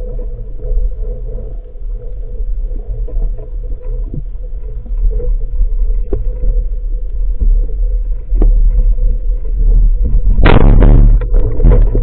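Steady low underwater rumble heard through a camera housing, then, about ten and a half seconds in, a loud burst lasting under a second as a band-powered speargun fires its spear.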